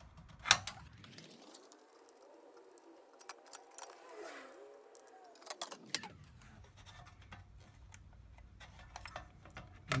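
Quiet handling noise: small clicks and taps as a circuit board is handled while a capacitor is desoldered from it, with one sharp click about half a second in.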